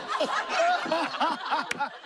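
Laughter: a run of short chuckling bursts, with a brief click near the end.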